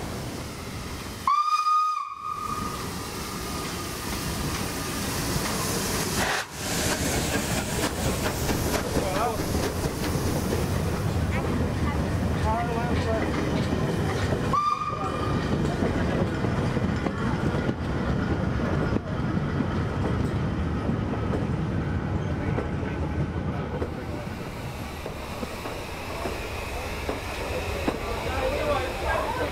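Steam locomotive whistle blowing twice: a loud blast about a second in, its tone trailing on for a few seconds, and a shorter, fainter blast about halfway through. Underneath is the steady noise of the train running with steam hissing.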